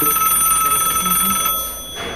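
A telephone ringing with a steady high electronic tone, an incoming call. It stops near the end.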